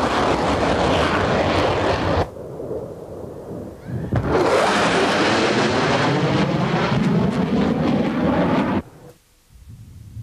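F-4 Phantom II fighter jet making a fast low pass, its jet roar loud for about two seconds. After a quieter moment it roars again from about four seconds in, the pitch sweeping as it passes, and the sound cuts off suddenly near the end.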